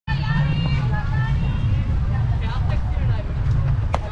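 Softball pitch popping into the catcher's mitt just before the end, one sharp crack, over a steady low rumble with voices chattering around the field.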